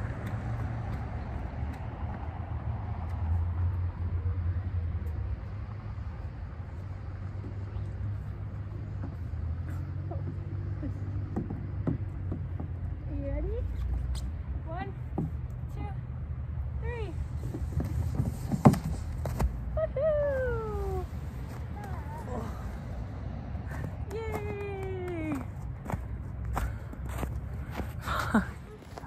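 A toddler's high-pitched calls and squeals, sliding up and down in pitch, start about halfway in over a steady low rumble. There is one sharp knock a little past the middle.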